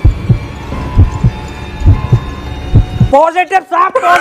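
Heartbeat sound effect: deep double thumps about once a second over a faint steady tone, then a man's voice comes in near the end.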